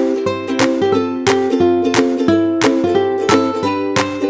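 Background music played on a strummed plucked string instrument, with a steady strum about three times a second.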